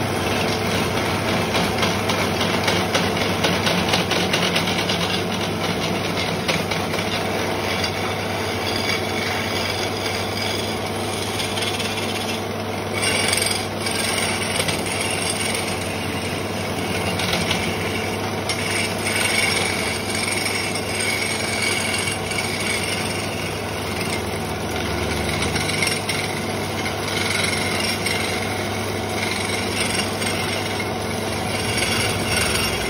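Floor-mounted electric wood lathe spinning a wooden handle blank while a hand chisel cuts into it: continuous scraping of the tool on the turning wood over a steady motor hum.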